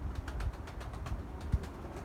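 Wind buffeting the microphone: a low, uneven rumble with a few faint clicks.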